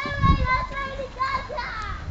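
Children's voices in the background, high-pitched calls and chatter, with a low rumble on the microphone near the start.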